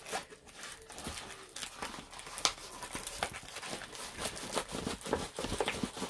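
Crinkling and rustling of a rolled diamond painting canvas being handled and rolled back the other way by hand: a run of small, irregular crackles and taps.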